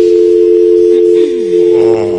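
Telephone dial tone on the studio's call-in line going out on air: two steady tones held together, loud and unbroken. It is the sign of a line that is open with no caller connected.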